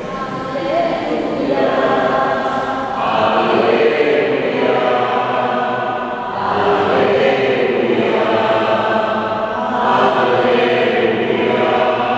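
A church choir sings slow, chant-like phrases with long held notes, a liturgical psalm setting such as the sung responsorial psalm after the first reading.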